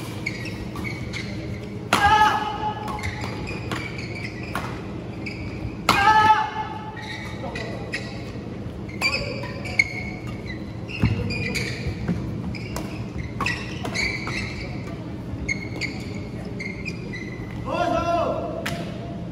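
A doubles badminton rally in a large echoing hall: rackets repeatedly strike the shuttlecock with sharp cracks, and court shoes squeak on the synthetic floor. The loudest squeaks come about 2 and 6 seconds in.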